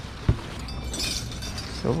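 One short, sharp knock about a quarter of a second in, then tissue paper rustling as hands dig through a packing box.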